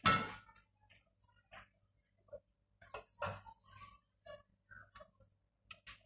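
Sparse light clicks and clinks of tableware being handled at a meal table, with faint snatches of voices in between. A short loud sound comes right at the start.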